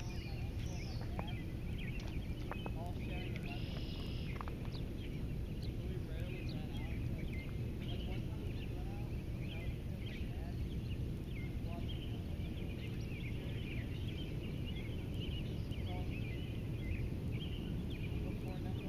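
Outdoor ambience of many small birds chirping and singing over a steady low background rumble.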